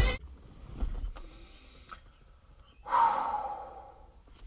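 A man lets out one long breathy sigh about three seconds in, fading over about a second, after a quiet stretch with a few faint clicks.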